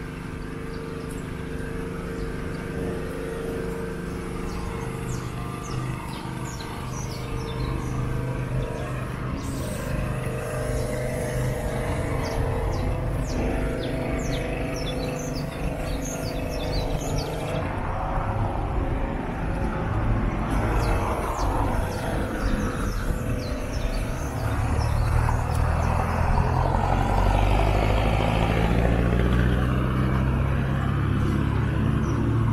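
Street traffic: vehicle engines running, growing louder over the second half as traffic comes closer, with birds chirping rapidly in short high notes through much of it.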